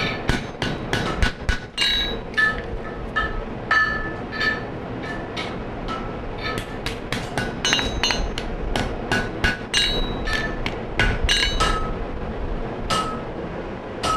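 Farrier's hammer striking a horseshoe on an anvil to fasten it to a rubber slapper pad. Quick, irregular runs of ringing metal strikes, with a short lull about halfway through.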